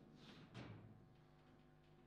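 Near silence, with two faint taps in the first half-second from the ball and rods of a table football table in play.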